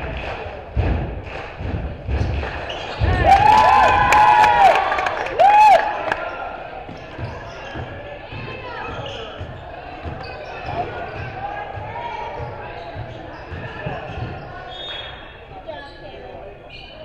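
A basketball bounced on a hardwood gym floor about once a second, then, about three seconds in, a loud burst of high-pitched squeals, shouts and sharp knocks ringing in the gym. After that, quieter scattered court sounds and voices as play runs on.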